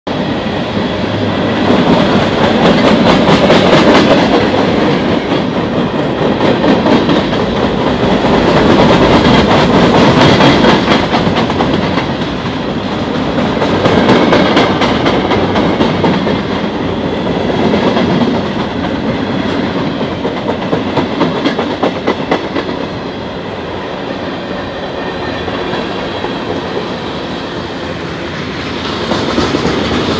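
Freight train cars rolling past close by, wheels clacking over the rail joints. The loud noise swells and eases every four seconds or so.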